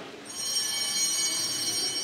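Altar bells (a cluster of small sanctus bells) shaken once about a quarter second in, their high, shimmering ring lingering and slowly fading. They mark the elevation of the consecrated host.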